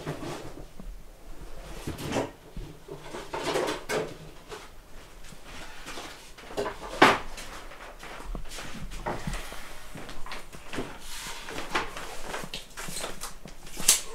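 Irregular knocks, clunks and clatter of things being handled and set down in a woodworking shop, with a sharp click about seven seconds in and another near the end.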